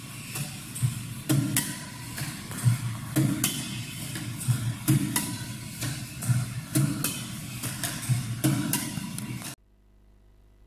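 Sharp hits of shuttlecocks, fired from a shuttle launcher and struck with a badminton racket, every half second to a second or so, over a steady low running noise. It all cuts off suddenly near the end.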